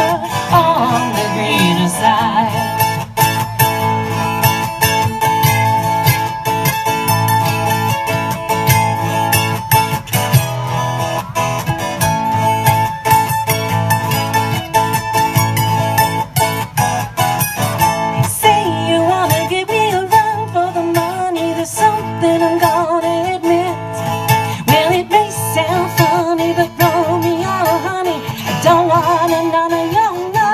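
Live acoustic band music: acoustic guitar with a second plucked string instrument playing a melody.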